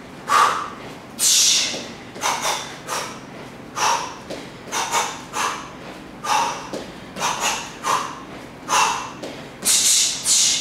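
Short, sharp, hissing exhalations forced out through the mouth with each punch and knee strike, about one or two a second in an uneven rhythm, as in Muay Thai striking.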